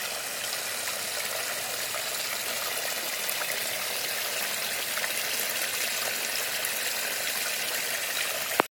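Steady running water trickling and splashing into an aquaponics fish tank from its plumbing.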